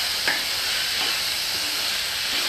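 Moong dal sizzling as it roasts in a little ghee in a kadhai over low heat, with a steady hiss. A spoon stirs and scrapes through the lentils against the pan.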